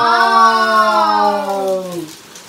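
A single long held note, rich in overtones, slowly falling in pitch and stopping near the end.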